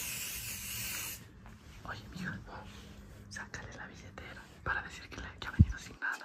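Aerosol can of coloured hair spray hissing steadily as it is sprayed onto hair, cutting off about a second in. A sharp thump sounds near the end.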